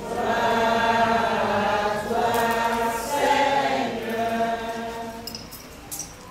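Sung liturgical chant at a Catholic mass: several voices on long held notes, dying away about four and a half seconds in.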